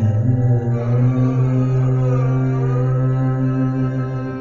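Male Carnatic vocalist holding a long sung note with a slow waver in pitch, in raga Darbari Kanada, over a steady low drone from a sruti box.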